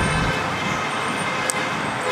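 Steady rush of street traffic from cars passing on the road alongside.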